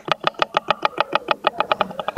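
Brief hand clapping: quick, evenly spaced claps, about nine a second, that thin out and stop near the end.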